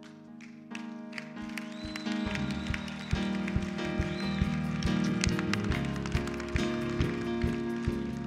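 Live church band music: sustained keyboard chords, with a steady beat of about two strikes a second coming in about two seconds in.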